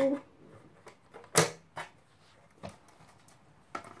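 Sharp clicks and snaps from a DVD player's casing and metal parts being pried apart, as a piece breaks loose. The loudest snap comes about one and a half seconds in, followed by a few fainter clicks.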